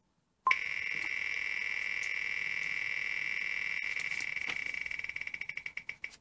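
Online spinning-wheel picker's ticking sound effect from a computer: a rapid run of ticks starts suddenly about half a second in, then slows near the end as the wheel coasts toward a stop.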